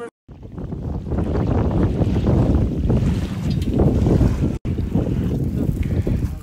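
Strong wind buffeting the microphone by choppy lake water, a heavy low rumble with small waves washing onto a gravel shore beneath it. The sound drops out for a moment about two-thirds of the way in.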